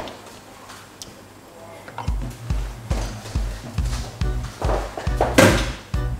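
Background music with a steady bass beat that comes in about two seconds in after a quiet stretch. A sharp thunk sounds shortly before the end.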